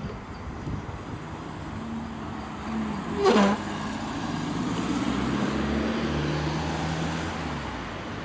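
A car passing close by at a junction, its engine hum and tyre noise rising and fading over road traffic. A brief loud noise about three seconds in is the loudest moment.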